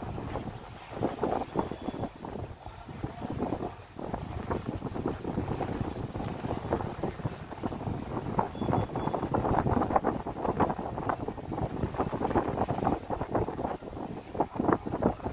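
Wind gusting over the microphone on the deck of a moving passenger ship at sea: an uneven rushing and buffeting that swells and drops.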